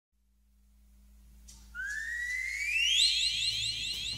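A whistle-like tone fading in and gliding upward in pitch, then breaking into quick repeated upward swoops, about four a second, as the song's intro starts.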